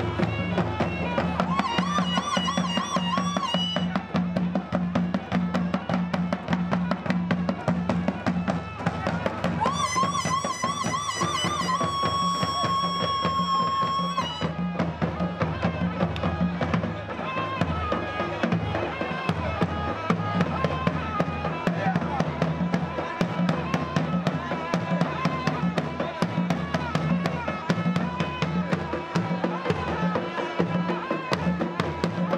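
Algaita, the West African double-reed shawm, playing a wavering melody with long held high notes about two seconds in and again around ten to fourteen seconds, over rapid, steady drumming on hand drums.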